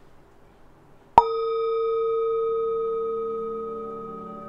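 A singing bowl struck once, about a second in, ringing on with a low tone and several higher overtones that fade slowly.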